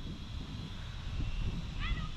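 Low rumbling wind noise on the microphone, with a brief high rising chirp near the end.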